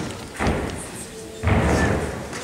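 A gymnast's feet hitting a sprung gymnastics floor during a tumbling pass: a thud about half a second in, then a louder, longer thud about a second and a half in as he lands.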